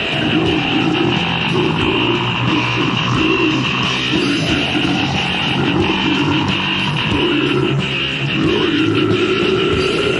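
Heavy metal band playing from a 1993 cassette demo recording: dense, distorted electric guitar and drums, continuous and loud throughout.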